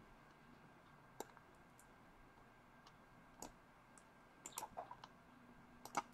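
Faint, scattered clicks from computer work: a single click about a second in, another after about three seconds, a quick run of several past the middle and one more near the end.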